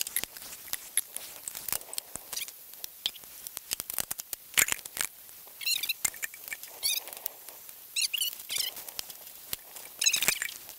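Steel trailer safety chain and bolt hardware clinking and rattling in gloved hands as the chain is fitted to the coupler, a busy run of irregular sharp clicks with louder clanks about halfway through and just after the end.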